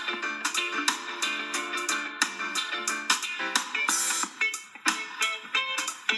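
Background music led by a strummed guitar, at about three strums a second.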